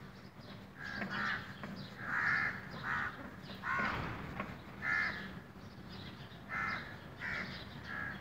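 Crows cawing: short harsh calls repeated about once a second.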